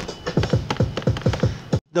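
A drum beat played through a DJ controller and chopped by rapid hot-cue pad presses: a quick run of punchy drum hits, about six or seven a second. It cuts off abruptly near the end.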